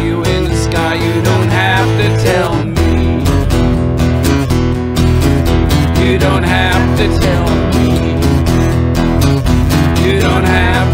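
Acoustic guitar strumming over an electric bass line in an instrumental passage of a country-folk song, steady and full, with the bass moving to new notes a few times.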